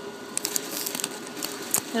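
A small foil packet crinkling as fingers tear it open, a run of small sharp crackles.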